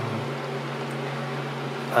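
Steady low mechanical hum with a faint hiss.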